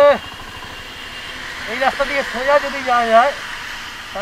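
A voice repeating a short phrase, with drawn-out notes, over the steady hiss of wind and road noise from a motorcycle riding on a wet road.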